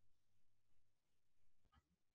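Near silence: faint room tone with a low hum, in a pause between sentences.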